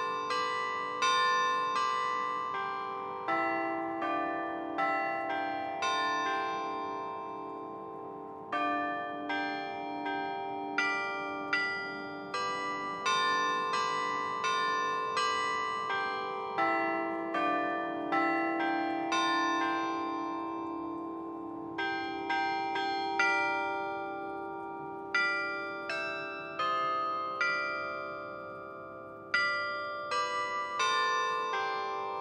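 Carillon bells playing a melody, one note struck every half second to a second or so, each ringing on under the next.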